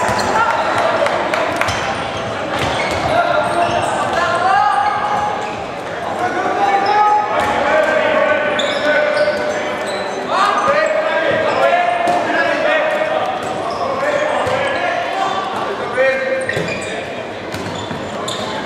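Handball game in a sports hall: the ball bouncing and slapping on the wooden court with short sharp knocks, under shouting voices of players and spectators, echoing in the hall.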